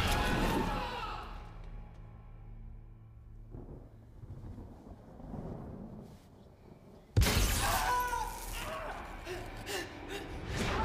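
Film soundtrack: the tail of a loud glass-shattering crash dies away at the start over low, steady, ominous music. About seven seconds in, another sudden loud hit comes, followed by high wavering sounds.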